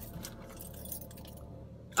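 Faint jingling of keys and rustling as things are rummaged through, mostly in the first second or so.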